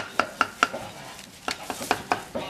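A meat cleaver chopping grilled meat on a chopping board: four quick chops, about five a second, then a pause of nearly a second, then three more chops near the end.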